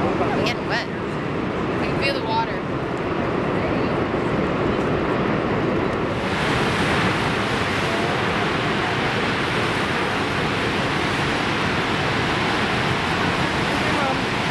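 Steady rushing of the Niagara River's whitewater below and above the falls. About six seconds in, it changes abruptly from a duller, lower rumble to a brighter, fuller rush of the rapids.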